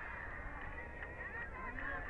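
Distant rally crowd: many voices calling and shouting at once, blending into a continuous hubbub with overlapping high calls.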